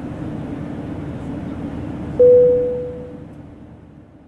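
Outro logo sound effect: a steady low rumble, then about two seconds in a single loud, clear ringing tone that fades away over about a second.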